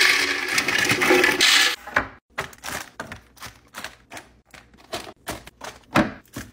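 Small crackers poured from a glass bowl into a glass jar: a dense rattling pour lasting about two seconds. It is followed by a run of separate light clicks and crinkles as packaged snacks are set into a clear plastic bin.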